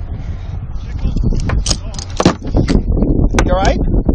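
Steady low rumble on a cockpit-mounted camera microphone, with a run of sharp knocks and clatter about a second and a half in as a crew member reaches the cockpit, and a brief shouted voice near the end.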